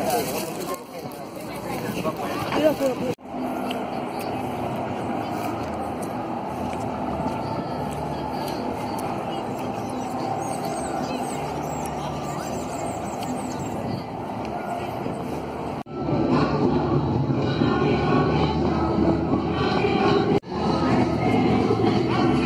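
Voices of a crowd walking outdoors over a steady background din, cut abruptly into several short clips, the last few seconds louder than the rest.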